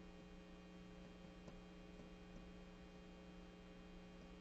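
Near silence with a faint, steady electrical hum: one low tone with a row of fainter higher tones above it, unchanging throughout.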